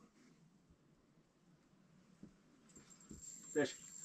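Near silence: quiet room tone with a few faint clicks, then a short excited call of "Fish" near the end.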